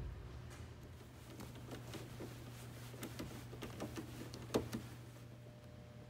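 Faint, scattered light clicks and taps of hand tools on metal, with one sharper click about four and a half seconds in, over a steady low hum: work loosening the Allen bolts of a truck AC expansion valve.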